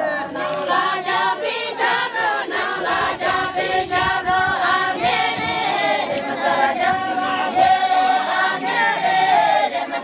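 A group of villagers singing a traditional wedding song together, unaccompanied, their voices holding long, wavering notes.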